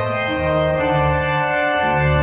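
Three-manual organ playing a hymn arrangement in full, sustained chords, the bass notes changing about twice a second.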